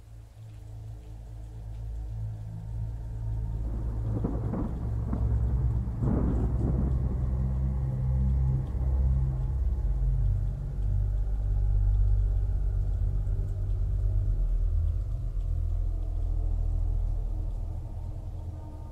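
Deep, thunder-like rumbling over a steady low drone. It builds over the first couple of seconds, with two louder rolls about four and six seconds in.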